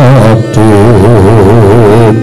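Javanese gamelan music accompanying a wayang kulit performance: a wavering, vibrato melody line sustained over steady low held tones.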